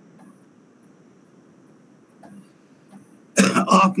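Faint steady hiss from an open video-call microphone. About three and a half seconds in, a man's voice comes in loudly over the call, beginning with a throat-clear.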